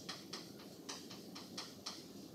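Chalk writing on a blackboard: short scratching and tapping strokes, about four a second.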